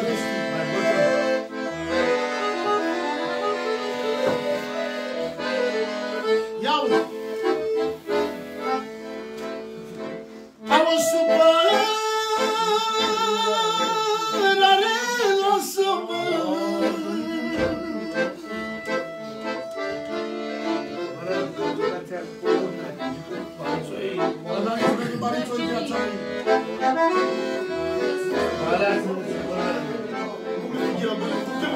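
Live piano accordion playing a tune, with a man's voice singing long, wavering held notes over it from about eleven to sixteen seconds in.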